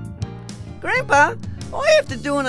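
Title music ends in the first half-second, then a child-like puppet voice calls out twice in high, sliding, sing-song tones.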